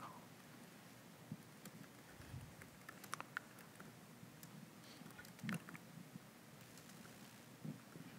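Faint computer keyboard typing: soft key clicks in a few small clusters, over near-silent room tone.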